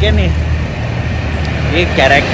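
Steady low rumble of road traffic passing on the street alongside.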